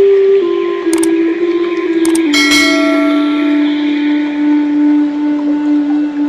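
Slow meditation music: a held tone that steps down in pitch, with struck bell-like notes ringing out about one second and two seconds in.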